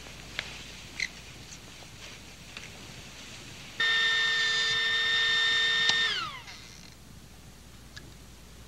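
Small benchtop laboratory centrifuge: a steady high-pitched whine starts suddenly a little before halfway and holds for about two seconds. It then falls in pitch and fades out as the rotor spins down. Before it there are only a few faint clicks.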